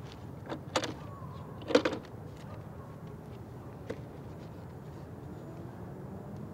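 Two sharp clacks about a second apart, then a few faint clicks, from hands handling the Bluetooth speaker mounted on an electric unicycle's handle.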